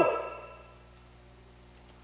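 The end of a man's spoken word dying away in the room's echo over about half a second, then near silence with a faint steady hum.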